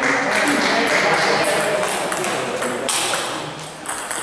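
A table tennis rally: a celluloid ball is struck by the bats and bounces on the table, making sharp clicks. Voices talking in the hall sound underneath.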